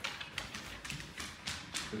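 A pit bull's claws clicking on a hardwood floor as she walks, a quick irregular run of light taps.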